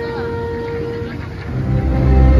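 Nighttime water show soundtrack over outdoor speakers: a long held note fades about a second in, then a loud, deep swell of music comes in about a second and a half in.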